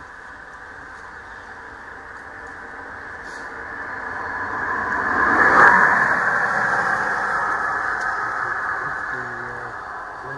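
A vehicle passing by: a rushing noise that builds over a few seconds, peaks about halfway through and slowly fades away.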